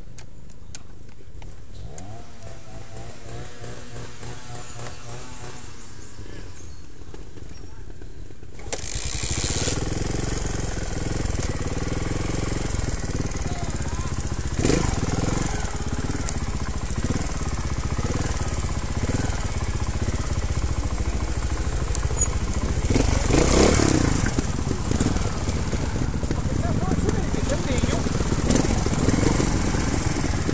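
Trials motorcycle engine running low and steady, then about nine seconds in getting suddenly louder and revving up and down under changing throttle as the bike rides along the trail, with a louder burst a little after twenty seconds.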